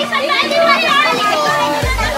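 Many children shouting and cheering at once over background music; a heavy bass beat comes in near the end.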